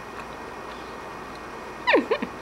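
A baby's short vocal squeal near the end, sliding quickly down in pitch, after a stretch of quiet room noise.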